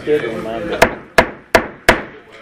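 Four sharp gavel raps on the wooden bench, about three a second, calling a meeting to order, each with a short ring in the hall.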